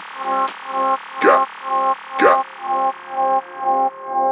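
Techno track with the kick drum dropped out: a distorted synth chord stab repeats in a steady rhythm, with two falling zap sweeps about a second apart; the high hats fade away midway.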